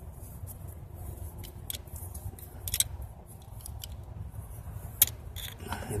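Scattered small metallic clicks and ticks as a helicoil insert is threaded by hand into a stripped cam tower bolt hole with its installation tool, over a faint low hum. The sharpest click comes about five seconds in.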